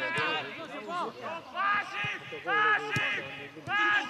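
Men shouting calls across a football pitch during play, in loud bursts one after another. There is a single sharp knock about three seconds in.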